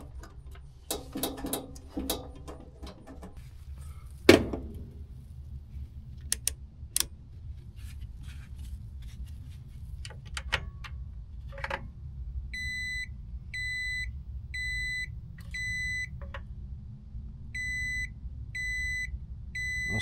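A digital clamp meter beeping in short, identical half-second tones: four in a row, a brief pause, then four more, while its test leads are held on the breaker terminals. Before the beeps come scattered clicks and knocks of hand tools on the unit's sheet-metal cabinet, the loudest a sharp knock about four seconds in.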